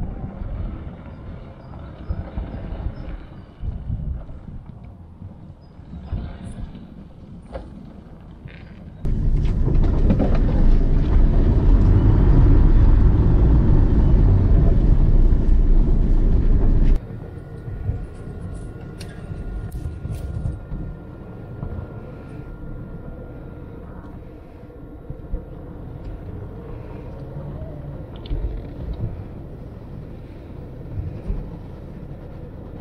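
Electric all-terrain vehicle on low-pressure tyres driving over frozen snow, with no combustion engine: only tyre, chassis and drivetrain noise with scattered knocks. For about eight seconds in the middle, a loud low rumble is heard inside the cab and cuts off abruptly; after it the vehicle sound is quieter, with a faint steady high whine for several seconds.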